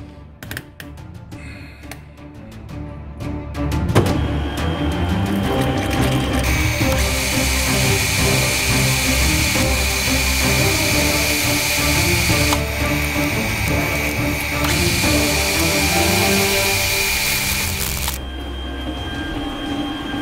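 Metal lathe starting up about four seconds in and turning a steel workpiece, with a steady high-pitched cutting whine from about six seconds that stops near the end. The chip is not breaking: the cutter throws long stringy steel swarf that winds around the part.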